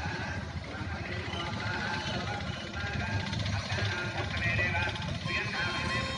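Voice-over narration in Telugu over a background music bed.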